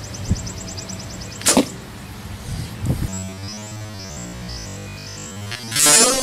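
A Mathews short-axle compound bow shot with a finger release: the string snaps forward with a sharp crack as the arrow leaves. Electronic background music comes in about halfway through.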